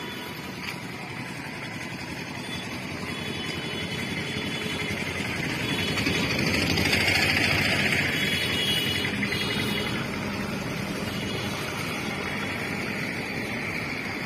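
Street traffic: a motor vehicle's engine running close by, growing louder to a peak about halfway through and then easing off.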